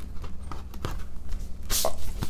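Handling of a vinyl record's paper insert and sleeve: scattered light knocks and paper rustling, with a louder paper swish near the end as the insert is pulled out.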